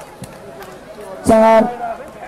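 Speech: a man calls out a single short word, about a second and a half in, over low background noise.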